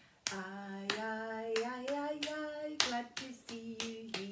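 A woman singing a children's welcome song in held notes while clapping her hands to a steady beat.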